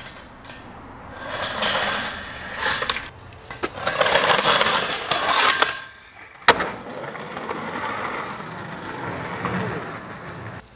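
Skateboard wheels rolling and scraping on concrete, loudest just before the trick. The board lands with a single sharp crack about six and a half seconds in, then rolls on.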